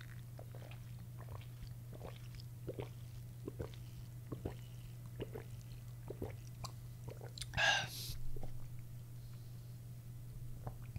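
A person gulping a fountain drink from a paper cup, with many small, soft swallowing and mouth clicks. A brief, louder breath-like sound comes a little under eight seconds in. A steady low hum runs underneath.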